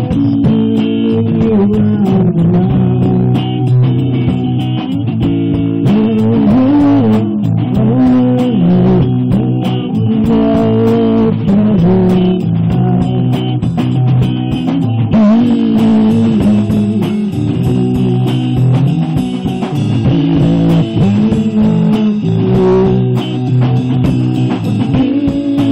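Electric guitar and bass guitar playing a rock/blues song together, with moving melodic lines over a steady low part; a brighter, hissier layer joins about fifteen seconds in.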